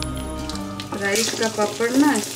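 Background music, then from about a second in, hot oil sizzling as a papad fries in a wok, with a voice over it.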